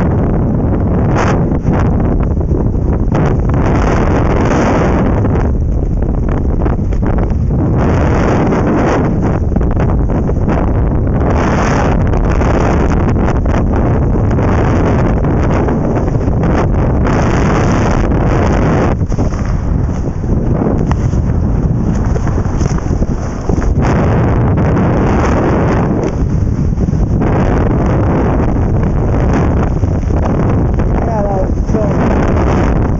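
Loud wind rushing over a camera's microphone during wingsuit freefall flight, a dense steady rush with uneven buffeting that swells and dips.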